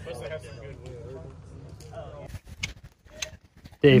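Faint distant voices over a low, steady rumble for the first two seconds or so, then a sudden drop to quiet broken by a couple of small sharp clicks.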